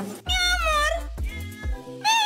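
Domestic cat meowing once, a drawn-out call starting about a quarter second in, over background music with a steady bass.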